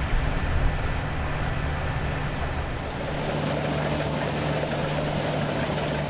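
Combine harvesters running while cutting grain: a steady engine drone with a constant low hum.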